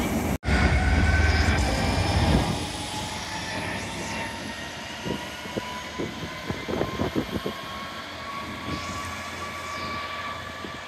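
Red DB Cargo diesel freight locomotive running past: a loud low engine rumble for the first couple of seconds after an abrupt cut, then quieter running with a run of sharp clacks from the wheels over rail joints.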